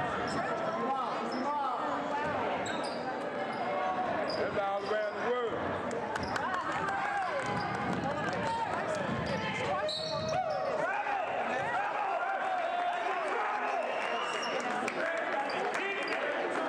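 Basketball being dribbled on a hardwood gym floor, with spectators shouting and talking throughout, echoing in the gym.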